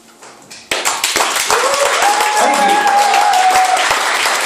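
The last notes of a live band fade out, then under a second in a club audience breaks into applause and cheering. A held cheering voice rises over the clapping in the middle.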